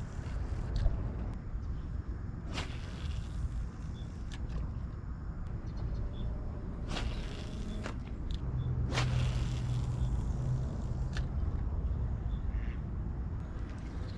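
Wind rumbling on the microphone, with a few brief whooshes from a fishing rod being cast. A low hum comes in for a couple of seconds past the middle.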